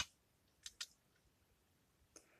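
Near silence broken by two faint, quick clicks about three-quarters of a second in, from the clear plastic housing of an RCD being handled as it is taken apart.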